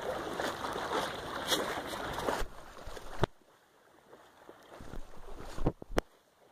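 Fast floodwater rushing down a concrete drainage channel, with wind on the microphone. The rush drops away to near quiet about three seconds in, then a few knocks from the camera being handled come near the end.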